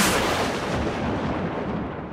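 A single cinematic boom hit: one sudden strike whose noisy, rumbling tail fades away over about two and a half seconds.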